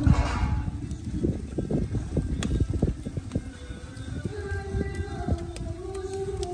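Background music over a quick, irregular run of clicks and knocks, metal kebab skewers clinking against the brick edge of a charcoal grill as they are turned.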